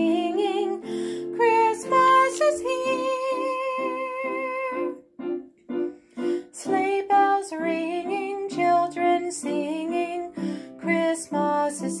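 Piano playing a Christmas song's instrumental passage: a melody over repeated chords, with a brief pause about five seconds in.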